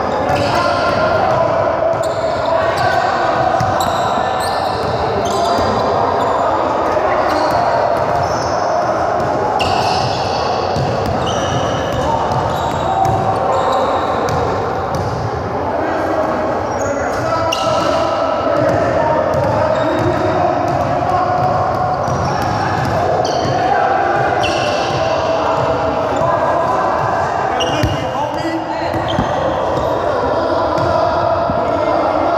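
Basketballs bouncing on a hardwood gym floor, with indistinct voices and court noise echoing in a large hall.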